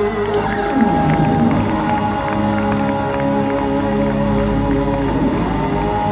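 Live rock band playing loud and steady: electric guitar and bass, with long held notes that slide in pitch. Crowd cheering mixed in.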